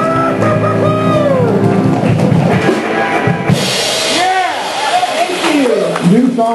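Live rock band with electric guitars, keyboard and drum kit playing held chords. About three and a half seconds in there is a burst of noise, followed by voices calling out over the band.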